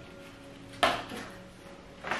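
A short handling noise from unboxing: one sudden scrape or knock about a second in, fading quickly, with a smaller one just after. Faint background music underneath.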